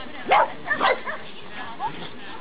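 Small dog barking: a few short, sharp barks in the first second and one more near the end.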